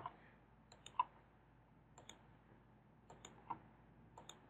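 Faint computer mouse button clicks, in small groups about once a second, some as quick double clicks.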